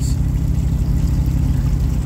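A boat's engine idling: a steady low hum.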